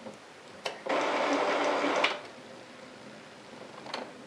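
Epson Stylus S22 inkjet printer running its power-on initialisation: the print carriage mechanism runs for a little over a second, with a click just before and another near the end.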